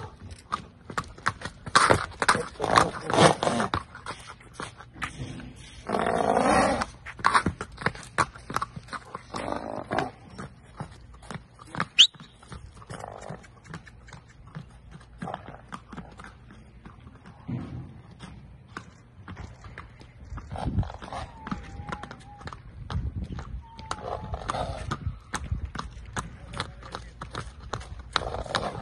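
Arabian horse's hooves clip-clopping on a paved road as it is led in hand, in uneven, prancing steps.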